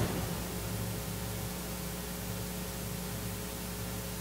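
Room tone: a steady hiss with a low hum underneath, no other sound.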